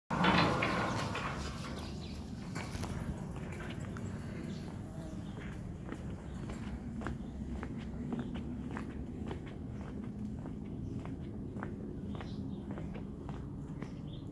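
Footsteps on brick paving at a steady walking pace, about two steps a second, after a brief louder noise at the very start.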